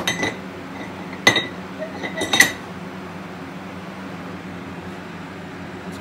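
Three or four sharp metallic clinks with a short ring, a hand tool striking a metal soft-plastic bait mold as it is opened. They fall in the first two and a half seconds; after that only a steady low hum remains.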